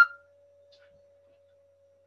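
A short electronic beep of two notes, the second lower, right at the start, then a faint steady tone hanging on underneath.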